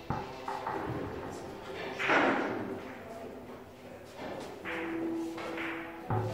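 Billiard hall background: soft background music and indistinct voices, with a sharp knock at the start and a brief, louder noisy burst about two seconds in.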